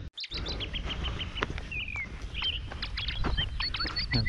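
Wild birds calling in dry woodland: many short, sharp chirps and a few brief falling whistles from more than one bird, starting just after a short gap at the very beginning.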